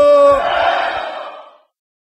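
A long held vocal shout, 'eee', on one steady pitch, cut off about half a second in, then a rushing noise that fades away to silence.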